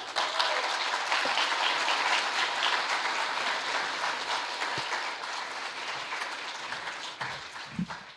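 Audience applauding, holding steady for a few seconds and then tapering off.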